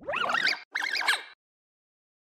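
Two short, squeaky chirping bursts with gliding pitch, one after the other, then the sound cuts off abruptly to dead silence.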